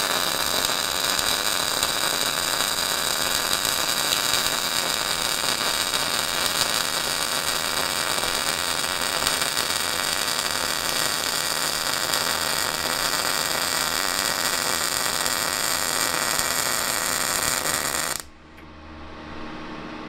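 MIG welding arc from a DECAPOWER XTRAMIG 200SYN semi-automatic welder, running at its maximum settings (170 A, 19.7 V) on 0.8 mm wire, as it lays a fillet weld on a T-joint in 4 mm steel. The arc sizzles steadily and evenly, a sign that it is burning stably even at full output. It stops abruptly about two seconds before the end.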